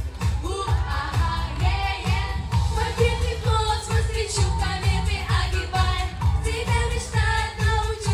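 Girls singing a pop song into handheld microphones through a PA, over a backing track with a steady, heavy bass-drum beat.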